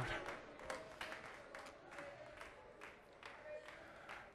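Faint, scattered hand claps, roughly two or three a second, with faint voices underneath, from a congregation praising.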